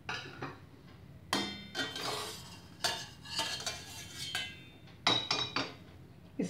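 Wire-mesh strainer clinking and scraping against a stainless steel saucepan as boiled drumstick pieces are scooped out of the water. Several sharp metallic clinks, each with a brief ring.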